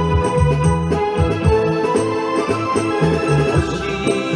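Instrumental passage of a karaoke backing track for a late-1960s Japanese group-sounds pop song, with no vocal. Its bass notes change roughly every half second under sustained higher chords.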